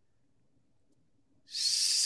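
Near silence for about a second and a half, then a drawn-out hissing 's' as a man starts the word 'six'.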